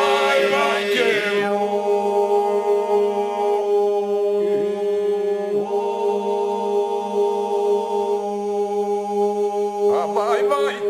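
Albanian men's folk group singing a cappella in iso-polyphony: the chorus holds a steady low drone under a lead voice that ornaments the line at first, then holds long notes with a few brief dips in pitch.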